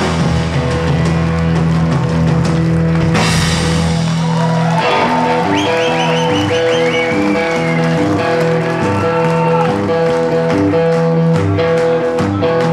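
Live blues-rock band playing: electric guitars, bass guitar and drum kit. There is a cymbal crash about three seconds in, then a run of bent, gliding guitar notes over the band.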